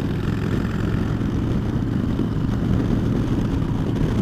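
Harley-Davidson Dyna Fat Bob's V-twin running steadily at highway cruising speed through Vance & Hines Short Shots exhaust, a constant low rumble with road and wind noise.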